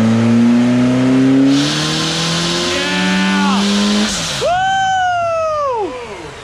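Car engine on a chassis dyno, fed by two electric turbos, pulling at full throttle with the revs climbing, then a loud rushing hiss. The revs drop off and a high whine winds down in pitch near the end. The pull runs clean, without the surging of the earlier run.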